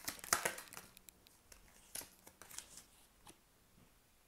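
Tarot cards being handled on a table: a quick flurry of card clicks and flicks in the first second, then a few single light card taps.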